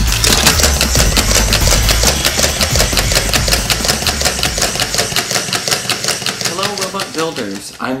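Small battery-powered toy robot duck walking, its motor and worm gear making a rapid, even clicking, about eight clicks a second. Bass-heavy music plays under it for about the first half, then stops, and a voice comes in near the end.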